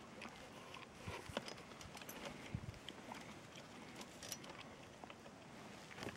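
Faint rustling with scattered light clicks and knocks as a plastic marten trap box is handled and a caught marten is pulled out of it.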